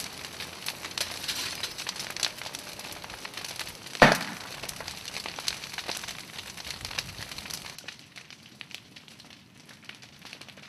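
Fire burning in a wooden allotment garden house, with dense crackling and popping and one loud sharp pop about four seconds in. The crackling grows fainter near the end.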